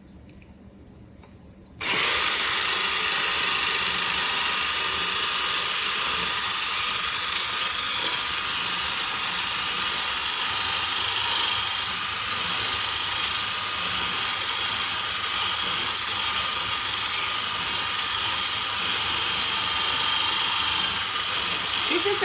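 Electric hand mixer switched on about two seconds in and running steadily, its beater whisking egg whites until they are no longer wet.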